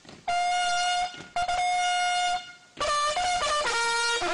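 A military bugle call played on a trumpet: two long, high held notes with short breaks between them, then a quicker run of notes stepping down to a lower held note near the end.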